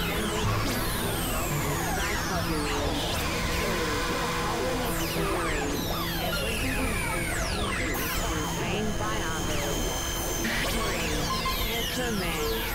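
Dense, layered experimental electronic music: many overlapping falling pitch glides over steady held tones and a noisy wash, at an even loudness throughout.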